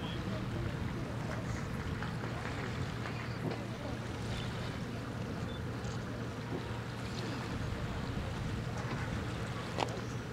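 Steady low engine drone of ships in the harbour carrying across the water, a constant hum with light background noise. A single sharp click comes just before the end.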